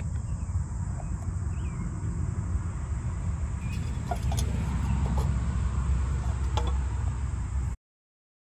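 Steady low outdoor rumble with a few faint clicks and chirps scattered through it; it cuts off abruptly just before the end.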